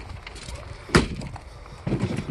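A car door shutting once: a single sharp thud about a second in, the door of a 1995 Lincoln Town Car limousine.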